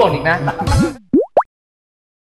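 Men talking and laughing, then about a second in two quick sound-effect tones that each slide sharply upward, a cartoon-style editing effect marking a scene transition.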